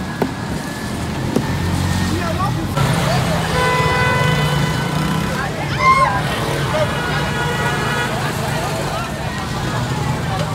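A vehicle horn held in two long steady blasts, the first about three and a half seconds in and the second after a short break around six seconds, over the low rumble of a running engine and street traffic.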